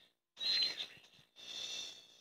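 Cartoon soundtrack sound effects played through a television speaker and picked up by a phone: two harsh, high-pitched bursts, the first starting about a third of a second in and the second near the end.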